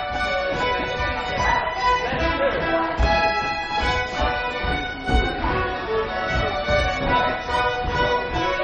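Live French folk dance music from a small band with a fiddle, playing a tune over steady held notes, with voices of the crowd mixed in.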